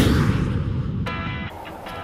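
Edited sound effect: a whoosh ending in a deep boom that fades over about a second, followed by a held musical tone.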